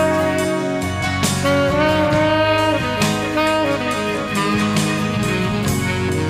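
Instrumental break of a blues-rock song: a lead melody line of held and bending notes over steady band backing with a regular beat.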